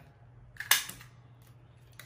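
Handheld lever-type craft paper punch snapping through a playing card: one sharp click a little under a second in, with a fainter click just before it.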